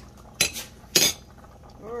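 A metal spoon clinking twice against a pot and a plate, the second clink, about a second in, louder and ringing briefly.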